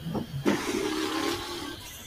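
A couple of short knocks, then a woman's drawn-out wordless vocal sound, one wavering note lasting about a second and a half.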